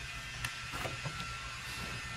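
Faint clicks of a Dometic portable fridge-freezer's plastic lid being unlatched and lifted open, over a steady low hum.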